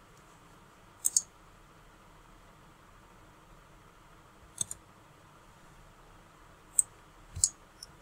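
Computer mouse clicks, a few spaced apart: a quick pair about a second in, another pair near the middle, and several more near the end, over a faint steady hiss.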